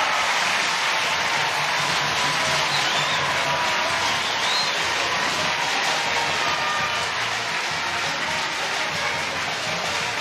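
Stadium crowd cheering and applauding after a goal, a dense steady roar that slowly dies down toward the end.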